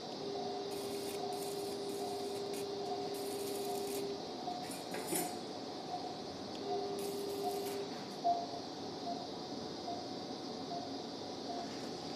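An electrosurgical (cautery) unit sounding its steady activation tone for about four seconds and again for about a second, with short bursts of hiss as the surgeon cauterizes to stop bleeding. A patient monitor beeps regularly throughout, about once every 0.7 seconds, and a sharp instrument click comes about eight seconds in.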